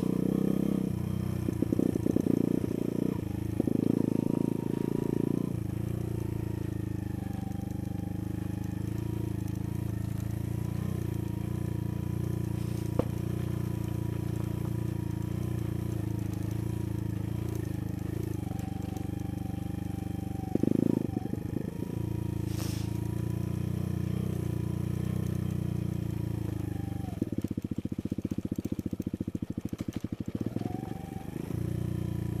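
Sinnis Blade trail bike's engine running steadily as it is ridden along a dirt lane. There are louder, rougher spells in the first few seconds, about twenty seconds in, and in the last few seconds.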